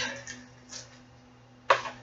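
Handling of a cardboard subscription box with something taped to its top: a faint brief rustle, then a sharp knock or click near the end, over a faint steady low hum.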